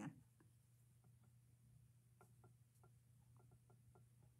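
Near silence: room tone with a steady low hum and a few faint, light clicks scattered through it.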